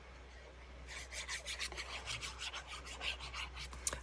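Fine metal tip of a glue applicator bottle rubbing quickly back and forth over a glossy playing card as glue is spread across it, several short scratchy strokes a second, starting about a second in.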